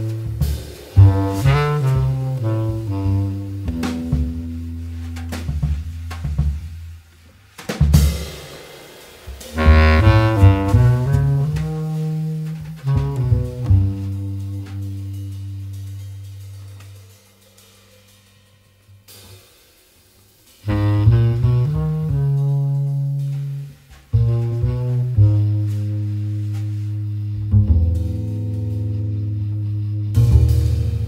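Jazz trio recording: a reed instrument plays the melody over double bass and drum kit at about 90 beats a minute. The music falls almost silent for a few seconds past the middle, then comes back in.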